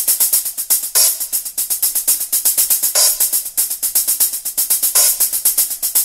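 Sampled hi-hat from a virtual drum kit playing a rapid, even run of hits, with a fuller accent about every two seconds. The hits vary in strength from one to the next: the velocities are randomized with alternate hands, giving a looser, more human feel.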